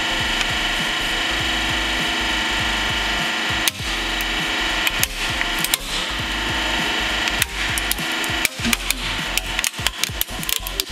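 Hydraulic press running with a steady hum as its plate bears down on a toy monster truck. From about four seconds in, the truck's body and chassis crack and snap, the cracks coming faster and faster toward the end.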